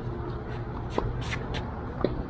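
A tennis rally on an outdoor hard court: a sharp racquet-on-ball hit about a second in, with a few short clicks and scrapes of movement on the court over a steady low hum.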